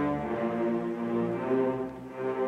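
Youth orchestra of bowed strings (violins, violas, cellos and double basses) playing held notes that move from one chord to the next, easing off briefly near the end.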